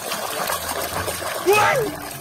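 Water sloshing and splashing as a hand swishes a toy through a basin of muddy water to wash it. A short exclamation of a voice comes near the end and is the loudest sound.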